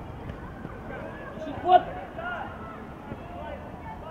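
Distant shouts of players and coaches across an open football pitch over steady outdoor background noise, with one louder call just under two seconds in.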